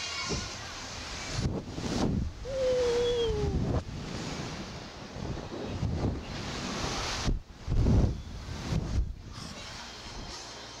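Wind rushing over the microphone of a Slingshot ride capsule as it swings through the air, coming and going in gusts. About two and a half seconds in there is a brief falling tone lasting just over a second.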